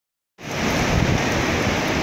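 Ocean surf washing onto a sandy beach, a steady rush that starts about half a second in, with wind rumbling on the microphone underneath.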